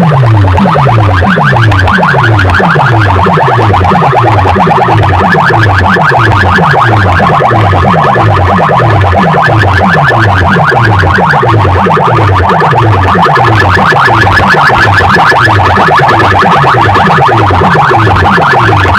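Very loud sound-competition DJ rig playing through amplifier racks and metal horn loudspeakers: a deep bass sweep falls in pitch and repeats about twice a second, under a fast, buzzy electronic rattle.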